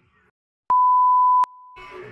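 Television colour-bar test tone, used as an editing effect. After a brief silence, one steady beep starts sharply about two-thirds of a second in and lasts under a second. It then drops to a softer continuation of the same pitch.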